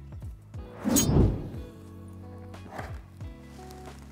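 Background music, with a short rustle and knock about a second in and a fainter one near three seconds: a crampon's webbing strap being threaded by hand through the eyelets of a mountaineering boot.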